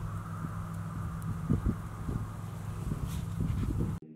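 Outdoor ambience with a steady low hum, like a distant engine, and a few faint soft knocks.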